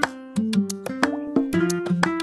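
Background music: a melody of short notes in a quick, even rhythm, about four notes a second.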